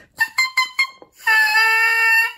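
Oboe reed blown on its own: four short tongued beeps, then a held crow of about a second. The crow is quite low, which the reedmaker puts down to the reed's opening being held too strongly open by a strong spine and rails.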